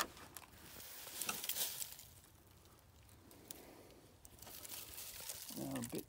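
Dry leaves and debris crinkling and crackling for about two seconds, then quieter with a few faint clicks.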